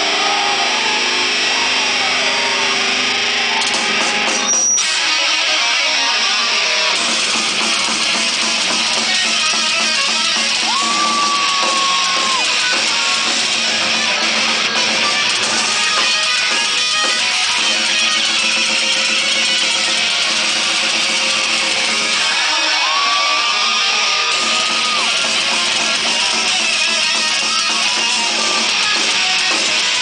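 A live metal band playing at full volume: distorted electric guitars, bass and drums in a dense, unbroken wall of sound. A held lead-guitar note bends and sustains about a third of the way in, and again past two-thirds.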